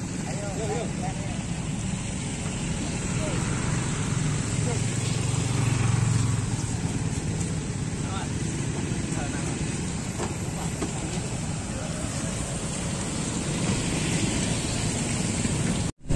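A motor vehicle engine running steadily under indistinct voices, its low rumble swelling and then easing off around five to six seconds in.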